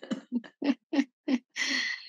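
A woman laughing in short, evenly spaced "ha" pulses, about three a second, then a sneeze near the end.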